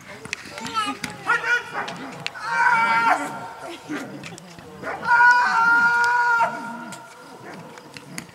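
Doberman vocalising while gripping a padded bite suit: shorter cries, then two long, flat-pitched, high cries about two and a half and five seconds in.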